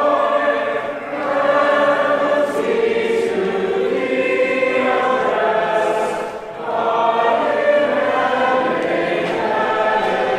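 A group of voices singing a hymn together in sustained chords, with short breaks between phrases about a second in and past the middle.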